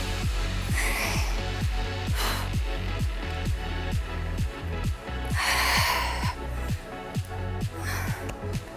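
Electronic workout music with a steady kick-drum beat, about two beats a second. Over it come a few sharp breaths, one longer exhale a little past the middle, from effort on a dumbbell tricep press.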